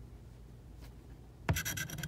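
A coin scratching the latex coating off a paper lottery scratch-off ticket. It starts suddenly about one and a half seconds in, with rapid back-and-forth strokes.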